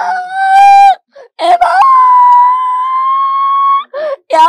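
A young woman wailing loudly in distress: a short held cry in the first second, then a long, high, steady wail of about two seconds that breaks off near the end.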